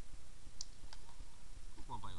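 Two short, sharp pops about a third of a second apart: distant paintball markers firing on the field. A man's voice starts just before the end.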